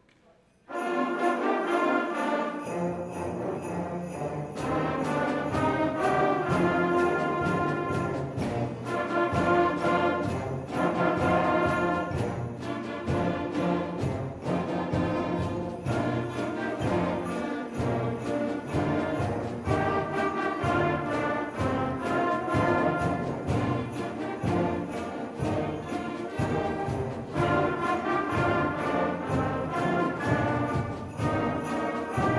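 Middle school concert band playing a rumba-style Christmas tune, with brass and woodwinds over a steady percussion beat. The band comes in suddenly about a second in, after a moment of near silence.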